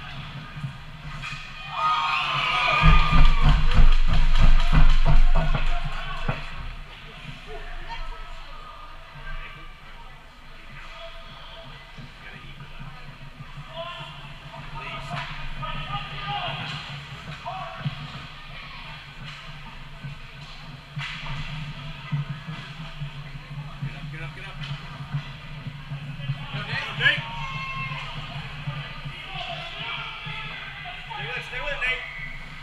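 Indoor ice rink sounds during a youth hockey game: a steady low hum, scattered knocks and echoing children's shouts. A few seconds in comes a close burst of heavy thumps and knocks lasting a few seconds, the loudest part.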